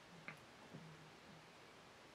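Near silence: room tone with a couple of faint ticks in the first second, small handling noises from working dubbing and thread at a fly-tying vise.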